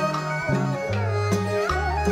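Instrumental introduction to a chèo folk song: traditional Vietnamese music with a wavering melody over held bass notes that change every half-second or so.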